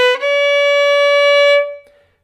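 Violin played with the bow in a slow scale: one note ends just after the start and a slightly higher note follows, held steady for about a second and a half before fading. The pitches stay put with no sliding correction, as the player deliberately leaves an out-of-tune note unadjusted.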